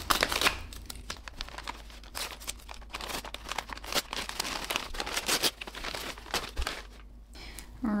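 White paper plant wrapping being handled, crinkled and torn open by hand: an irregular run of crackles and rustles, with a brief lull near the end.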